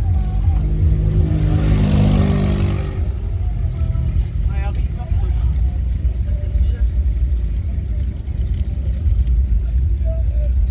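Wind buffeting the microphone with a constant low rumble, while a motor vehicle passes close by, swelling and fading between about one and three seconds in. Faint voices in the background.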